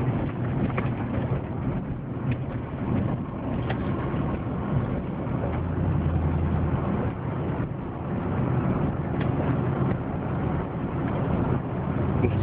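Supercharged V8 of a Jeep Grand Cherokee SRT8 running under way, with road noise, heard from inside the cabin. The low engine drone swells about halfway through and again near the end.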